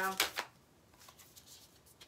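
A tarot deck being shuffled by hand. A couple of crisp card clicks come just after the start, then soft, faint sounds of cards sliding with a few light ticks.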